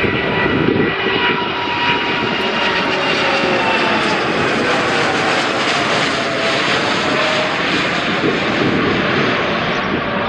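Rolls-Royce Trent 1000 turbofans of a Scoot Boeing 787 Dreamliner at takeoff power, climbing out low overhead: a steady loud jet roar with whining tones that slowly fall in pitch as the aircraft passes.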